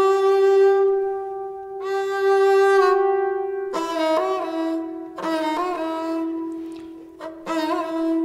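Sarangi bowed solo: a run of long held notes, each phrase restarting after a short break, decorated with grace notes and then with turns, quick small flicks of pitch around the note before it settles a little lower.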